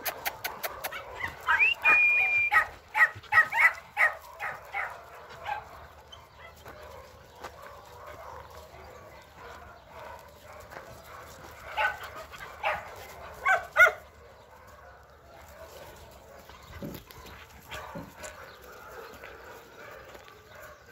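Dogs barking and yipping while playing: a quick run of short calls in the first few seconds, another burst about twelve to fourteen seconds in, then quieter.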